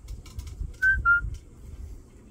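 Male eclectus parrot giving two short, clear whistled notes in quick succession, each falling slightly in pitch, about a second in.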